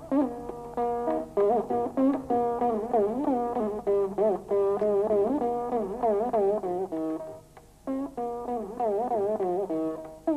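Veena played with plucked notes and wide, oscillating slides in pitch between them (gamakas), in a Carnatic varnam in raga Begada. The playing dips briefly about seven and a half seconds in, then resumes.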